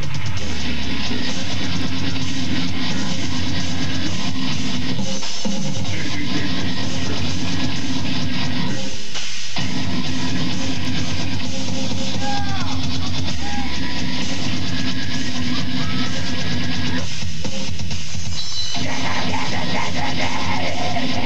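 Loud heavy metal band music with distorted guitars, played live. The band breaks off for short moments about five and nine seconds in, and the low end drops away briefly near the end.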